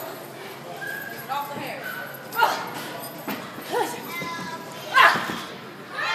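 Several short shouts and yells from people's voices, about a second apart, the loudest near the end, over the steady noise of a crowd in a hall.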